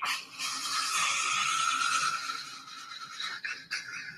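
A man's long, drawn-out vocal cry, loud for about two seconds and then fading, with a few short sounds near the end.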